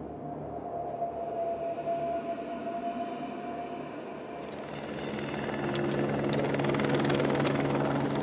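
Helicopter flying, its rotor and engine sound growing louder over the second half, with a steady music bed underneath.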